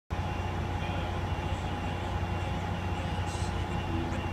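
Steady low rumble of idling vehicles in a covered bus terminal, with a faint steady whine above it.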